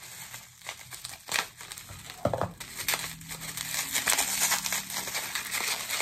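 Plastic bubble wrap crinkling and crackling irregularly as it is cut open with scissors and pulled off a small bottle.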